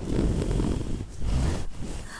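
Low rumbling and rustling noise with a few faint clicks.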